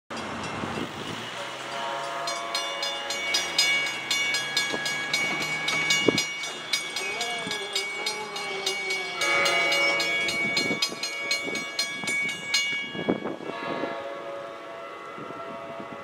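NJ Transit GP40PH-2B diesel locomotive's horn sounding in long held chords as the train approaches, over a rapid, even clanging of about three strikes a second that stops about three-quarters of the way in.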